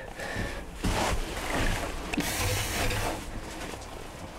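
Rustling and handling noise: a hiss that swells about a second in and again for a second or so in the middle, then eases off.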